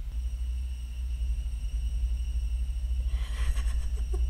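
TV-drama sound design for sudden deafness: a low steady rumble under several thin, high ringing tones, with a hiss swelling up about three seconds in.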